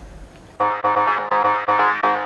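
Background music: synthesizer keyboard notes in a quick, even rhythm, cutting in suddenly about half a second in after a moment of low room tone.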